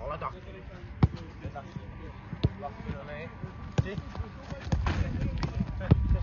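A football being kicked back and forth in quick one-touch passes on grass, sharp knocks roughly once a second, with short shouts between them.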